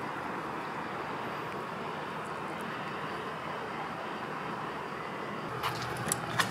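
Steady outdoor background noise of distant vehicles, with a couple of faint clicks near the end.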